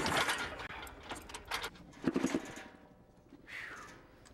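Kickstarting a high-compression motorcycle engine: several sharp kicks, each turning the engine over with a cough, but it almost catches and does not start.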